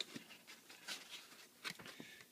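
Faint handling sounds of a piston and its tool-steel wrist pin being worked in tissue paper: a few light clicks and scratchy rustles as the pin is slid back into the piston.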